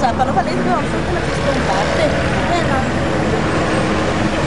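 Busy street ambience: steady traffic noise with scattered chatter from several voices.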